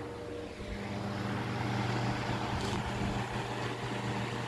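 A 12-inch Diehl G12AJ16 desk fan running on low speed: a steady electric motor hum under a rush of air from the blades.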